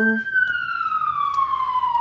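Emergency vehicle siren wailing: one long tone sliding slowly down in pitch.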